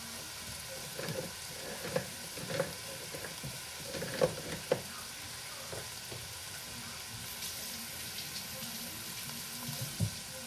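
Vegetables and garlic sizzling in a stainless steel pan as they cook down, a steady frying hiss. A few light clicks and knocks come in the first five seconds.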